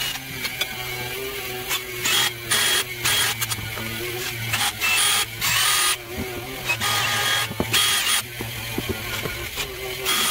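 DeWalt cordless drill run in repeated short bursts of a second or less, drilling into a wooden axe handle through a steel saw-blade head, over a steady low hum.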